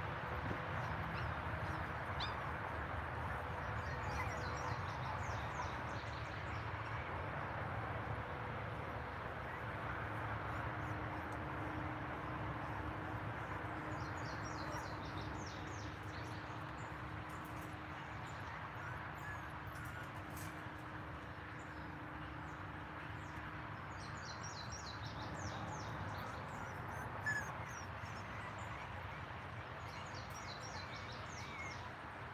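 Steady outdoor background noise with faint birds chirping in a few short bouts, and one brief sharp sound near the end.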